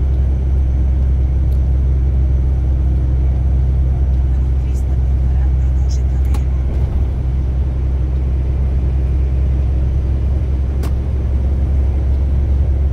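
Steady low drone of a heavy truck's engine and tyres on a wet motorway, heard from inside the cab, with a few faint clicks now and then.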